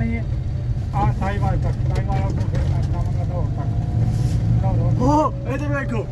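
Steady low rumble of a vehicle's engine and road noise inside the cabin while driving, with brief snatches of voices over it.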